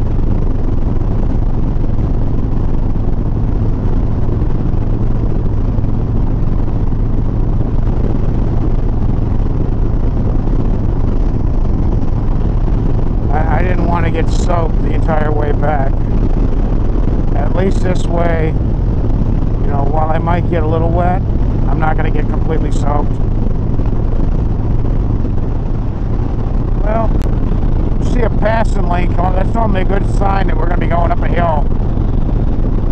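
Harley-Davidson Sport Glide's V-twin engine running steadily at highway cruise, a constant low drone. The engine sounds okay on regular-grade fuel, ridden gently. A man's voice is heard briefly in the middle and again near the end.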